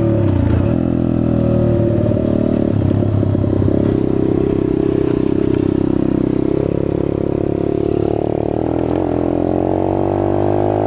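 Chinese dirt bike engine running under way. Its pitch drops about half a second in, then climbs steadily over the last few seconds as the bike accelerates.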